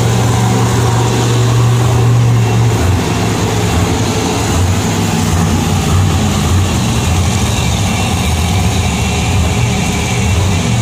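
Monster truck engines running in an indoor arena: a loud, deep, steady drone that starts to waver after about three seconds.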